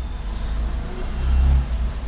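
A low, steady rumble that swells briefly about one and a half seconds in.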